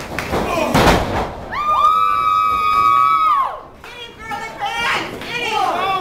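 A single loud thud of an impact in a wrestling ring about a second in, then a spectator's long, high-pitched yell held for about two seconds that drops in pitch as it ends, followed by scattered crowd voices.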